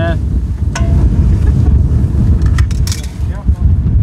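Wind buffeting the microphone, a heavy low rumble throughout, with a few brief sharp clicks about a second in and again near the three-second mark.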